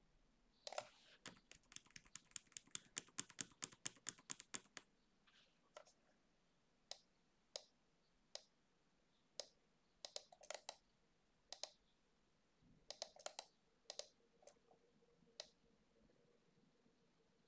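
Typing on a computer keyboard: a fast run of keystrokes lasting about four seconds, then single clicks spaced roughly a second apart.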